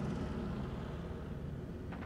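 Low, steady rumbling drone with a faint hiss above it, slowly fading.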